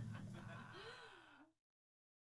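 The last ring of a jazz band's final chord (piano, bass and cymbal) fading away, with a faint, short breathy voice sound about a second in, before the sound cuts off to complete silence.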